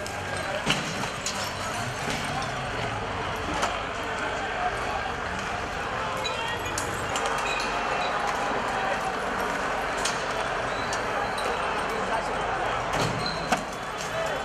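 Street crowd shouting and yelling, with scattered sharp bangs and cracks amid the flare smoke and thrown debris.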